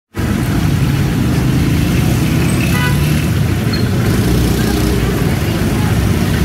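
Chapli kebabs deep-frying in a large karahi of oil, a steady sizzle over a low rumble of street traffic, with a brief faint voice or tone about halfway through.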